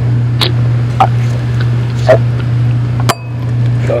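A man taking a drink: a few short gulps, about a second apart, over a steady low hum.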